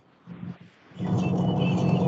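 Background noise from an unmuted participant's microphone on a video call: after a near-silent first second, a steady low hum with a hiss above it sets in.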